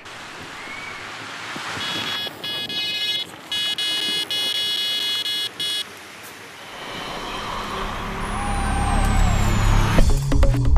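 Electronic carp bite alarm sounding a continuous high tone for about four seconds, broken by a few brief gaps, as a carp runs off with the line. Over the last few seconds a low sound builds up and becomes the loudest thing, leading into music.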